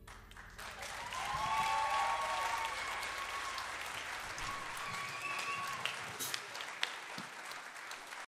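Audience applauding, building up about a second in and then holding steady, with a few long held calls of cheering over the clapping.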